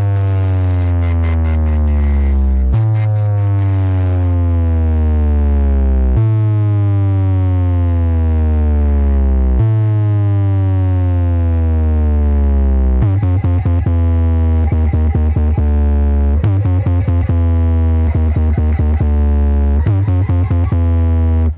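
Electronic pop-bass test track played loud through a large DJ speaker system. Heavy bass comes in four long falling sweeps of about three and a half seconds each, then from about 13 s in breaks into a fast stuttering pulse.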